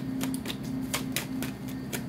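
A deck of tarot cards being shuffled by hand, the cards giving short, sharp clicks against each other at about four a second, unevenly spaced.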